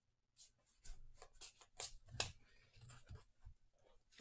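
Pokémon trading cards being handled and slid over one another in the hands: a faint run of soft flicks and rustles, the loudest a little past halfway.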